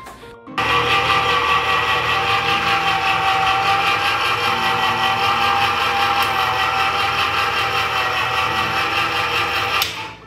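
Countertop electric can opener running steadily as it turns a can and cuts around the lid. The motor starts about half a second in and stops abruptly just before the end.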